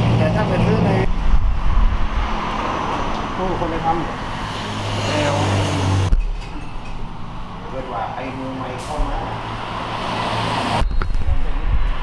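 Indistinct talk of people in a café mixed with the steady low rumble of road traffic. The background changes abruptly twice as the shots cut.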